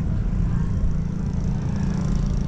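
Wind buffeting the microphone: a steady, irregularly fluttering low rumble.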